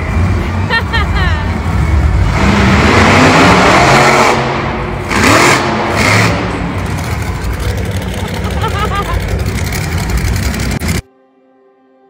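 Monster truck engines revving in an arena, phone-recorded from the stands, with voices and crowd noise mixed into the loud din. It cuts off suddenly about a second before the end, leaving faint background music.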